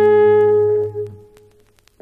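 French horn and double bass playing a jazz blues together. The horn holds a long note over the bass, and both die away about a second in, leaving a brief pause.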